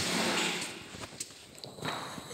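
Footsteps and scuffing of someone walking across a workshop floor, fading off, with a couple of light clicks.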